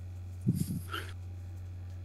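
A steady low electrical hum, with one brief, faint voice-like sound about half a second in, lasting about half a second.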